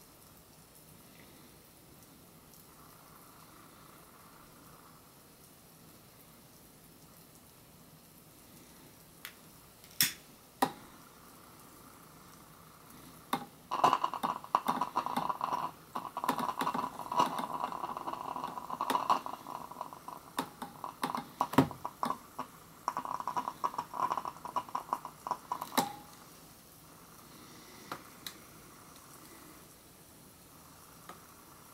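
Two sharp clicks, then about twelve seconds of rapid crackling and popping as the hydrogen given off by calcium metal reacting with water is lit with a flame at the mouth of the beaker. It sounds like fireworks.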